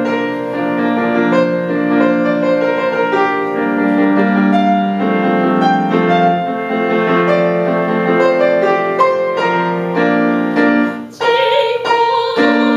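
Grand piano playing a solo passage of struck chords and melody. Near the end the piano drops away for a moment and a woman's classical singing voice enters with a wavering vibrato, the piano accompanying her.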